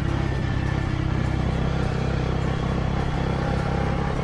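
Sport motorcycle's engine running steadily at an even cruising speed, heard from the rider's own bike, under a constant rush of riding noise.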